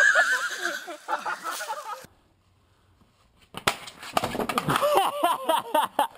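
A loud, high-pitched yell over a splash, cut off after about two seconds. After a short silence, a sudden clatter of impacts about three and a half seconds in, then laughter.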